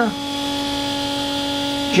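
Steady hum of machinery running in a boat's engine room: one low, unchanging tone with a ladder of overtones above it.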